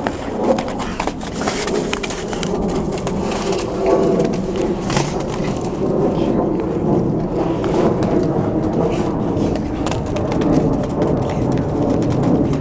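Dog boots clicking and scuffing on brick pavers and snow as several dogs run and play, many sharp clicks scattered through, over a continuous low wavering sound.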